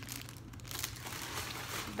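Small clear plastic packaging bag crinkling as it is handled, in irregular rustles.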